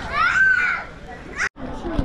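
A child's high-pitched voice calling out, the loudest sound here, over the chatter of people walking around. The sound cuts off suddenly about a second and a half in, then the background chatter returns.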